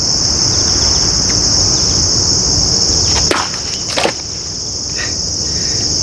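A heavy Odenwolf machete chopping through a plastic water bottle on a wooden stump: a sharp cut a little over three seconds in, then a second knock about a second later. A steady high insect chorus of crickets runs underneath.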